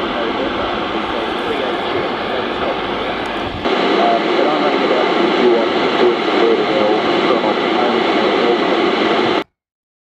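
Static and noise from the Seacom 40B 160-metre AM transceiver's speaker as it listens on 1.8 MHz. It gets a little louder about four seconds in and cuts off suddenly near the end.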